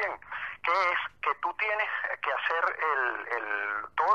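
Speech only: a man talking in Spanish over a remote link, the voice thin and phone-like.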